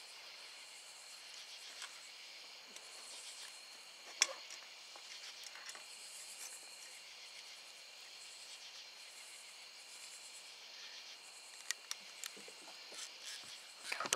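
Faint, steady evening chorus of crickets and other insects chirping in the field. A few sharp clicks cut through it, the loudest about four seconds in and two smaller ones near the end.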